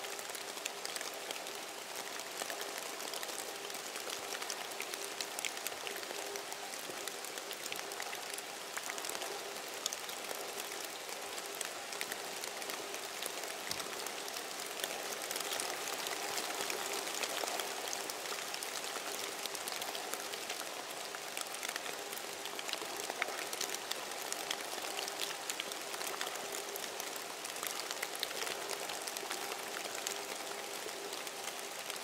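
A steady hiss full of fine crackles and ticks, like rain falling, with a faint low hum underneath.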